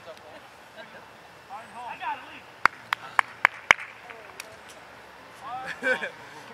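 Five sharp hand claps in quick succession, about four a second, a little past halfway, with a couple of fainter claps after them. Voices shout on an outdoor field before the claps, and a laugh comes near the end.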